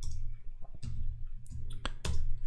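A few separate key clicks on a computer keyboard as a short terminal command is typed, over a low steady hum.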